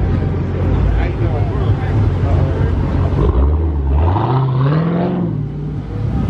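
Dodge Charger V8 engine idling, then revved once: its pitch climbs steadily from about three seconds in for nearly two seconds, then drops back.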